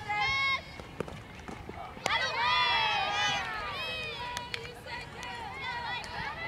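A softball bat strikes the ball with a sharp crack about two seconds in, and shouting and cheering from many voices breaks out at once and carries on.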